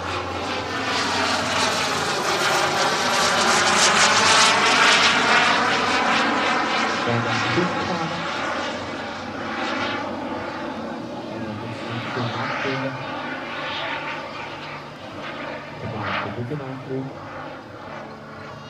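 Kerosene turbine engine of a large-scale model Hawker Hunter jet flying past. A rushing jet noise with a sweeping, phasing tone and a faint high whine builds to its loudest about four seconds in, then fades unevenly as the jet flies away.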